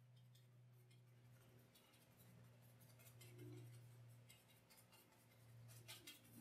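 Near silence: a low steady hum with faint scratching of a paintbrush working oil paint on canvas, a little louder about halfway through.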